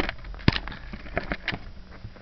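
A few short clicks and taps from a beaded necklace being handled, the loudest about half a second in and three quick ones a little past the one-second mark.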